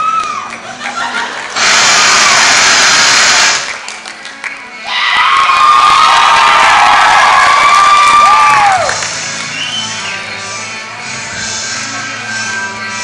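A crowd cheering and shouting, with high drawn-out cries, in two loud bursts: one from about two to three and a half seconds in, the other from about five to nine seconds. Each starts and stops abruptly. Music plays underneath and carries on at a lower level once the cheering stops.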